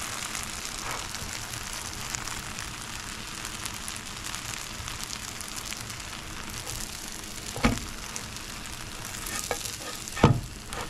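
Sourdough bread slices sizzling as they toast in a pan, a steady hiss with fine crackles. A single sharp knock about three-quarters of the way through.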